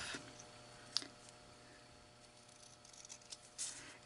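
Small scissors snipping the tip off a folded paper corner: faint, with one sharp click about a second in and a few small ticks near the end, over a low steady room hum.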